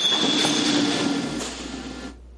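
Vehicle running noise with a high, steady squeal at the start, fading out over about two seconds.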